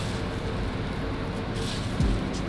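Crispy fried onions rustling and crackling as hands toss them on paper towel, a steady dry crunch. The sound shows they have been fried fully crisp.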